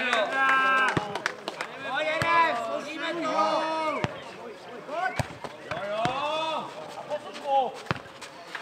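Players shouting and calling to each other during a nohejbal rally, broken by several sharp knocks of the ball being kicked and bouncing on the clay court.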